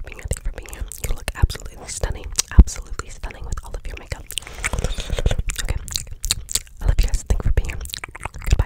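Close-miked ASMR whispering and wet mouth sounds, with many short sharp clicks and one louder click about two and a half seconds in.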